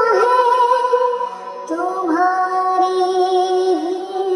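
A woman singing long held notes of an Urdu naat, a devotional song, over music: one note fades about a second in and a second, lower note is held from a little under two seconds in.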